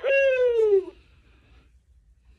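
The 1997 LeapFrog Think & Go Phonics toy's recorded voice says one drawn-out word, its pitch falling, lasting about the first second.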